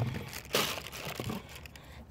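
Cardboard box being handled, rustling and crinkling, with a louder scraping rustle about half a second in.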